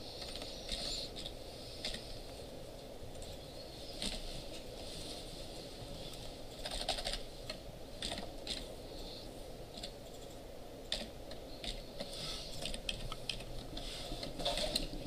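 Computer keyboard typing, short scattered clusters of keystrokes with pauses between them, over a faint steady background hum.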